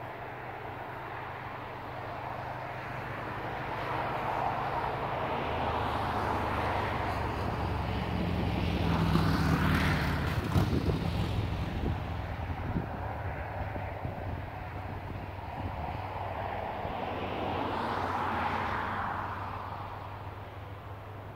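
The drone of a passing engine swells to its loudest about halfway through and fades away, with a second, smaller swell near the end.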